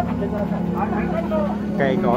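A crowd of people talking over a steady low hum.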